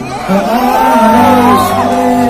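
A large concert crowd cheering, many voices calling out at once, over live band music with held low notes.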